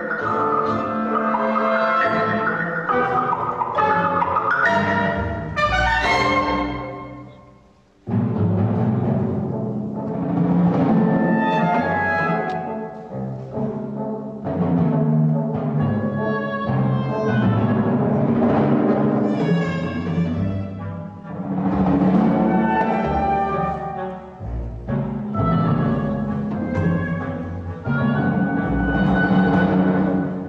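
Melodic timpani solo played on six drums with chamber orchestra accompaniment. The sound dies away about eight seconds in, then the music starts again abruptly.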